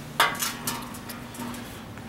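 A sharp metallic clink about a quarter second in, followed by a few lighter knocks and rattles as the sheet-metal charger case is handled on the workbench, over a low steady hum.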